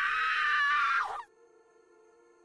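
A shrill, high-pitched scream lasting just over a second, cutting off with a brief falling tail, followed by a faint steady music drone.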